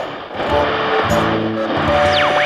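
Guitar-led theme music coming in about half a second in.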